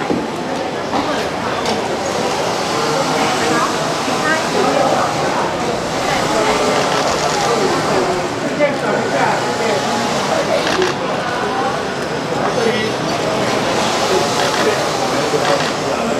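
Indistinct chatter of several people talking over one another, steady throughout, with no single clear voice.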